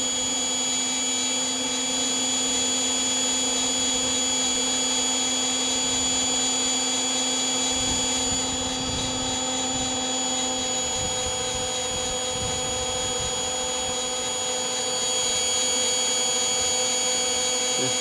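Electric blower motor of a home-built roaster running steadily, a motor whine made of several steady tones over a rushing hum. One low tone drops out about ten and a half seconds in, and the sound dips slightly for a few seconds after.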